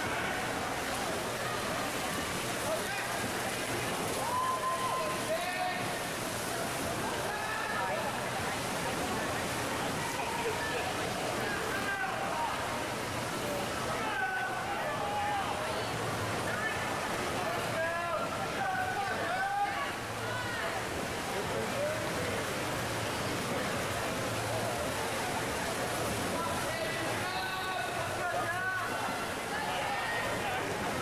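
Spectators shouting and cheering, many voices calling out over one another, over a steady wash of splashing water from freestyle swimmers racing.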